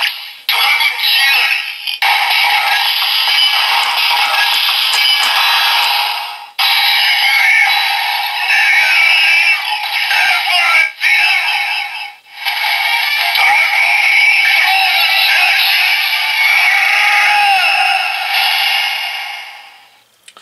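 Bandai DX Sclash Driver toy transformation belt playing its electronic sound effects through its small built-in speaker, with the Dragon Sclash Jelly inserted: a synthesized voice calling out announcements over looping electronic music, with a few brief breaks.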